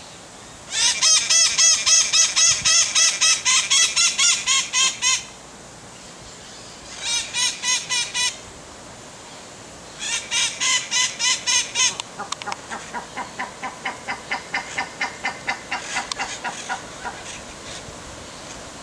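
A bird calling in fast, evenly repeated notes, about five a second. There are three loud runs in the first twelve seconds, then a softer, longer run of lower notes.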